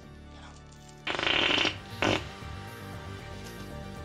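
Comic fart sound effect: a loud fart about a second in lasting about half a second, then a shorter second one, over background music.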